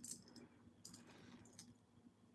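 Near silence, with a few faint clicks and rustles as a large sterling silver and amber pendant, with its chain and paper price tag, is turned over in the hands.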